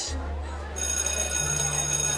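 School bell ringing with a steady, even tone, starting about three-quarters of a second in. A low held music note sounds underneath.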